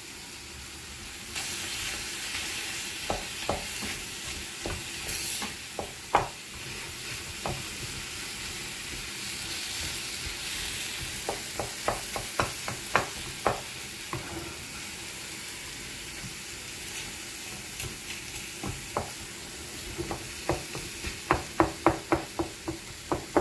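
Whole tomatoes sizzling in oil in a frying pan, being cooked down for tomato chutney, with a wooden spatula stirring and knocking against the pan in short clicks that come thickest in the middle and again near the end.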